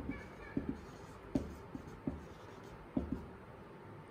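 Marker pen writing on a whiteboard: a string of short, sharp strokes and taps as words are written out.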